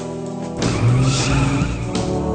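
Film soundtrack: music with sustained chords, and from about half a second in a loud, noisy rush with wavering pitch that lasts over a second.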